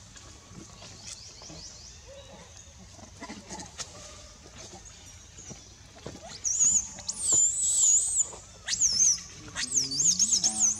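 Baby macaque squealing in high, wavering cries that slide up and down, starting about six and a half seconds in and repeating several times near the end; before that only faint rustles and clicks.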